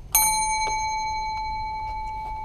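A chrome counter service bell is struck once, ringing out in one long, slowly fading tone. It is rung to summon a clerk back to the service window.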